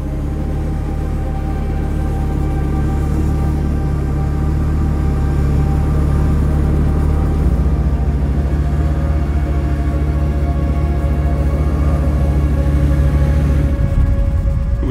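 Dark soundtrack music: a low sustained drone with held chords, slowly swelling in loudness.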